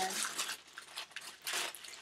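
Rustling and crinkling of a small shopping bag being handled as a shampoo bottle is pulled out of it, loudest in the first half-second, then a few lighter handling rustles.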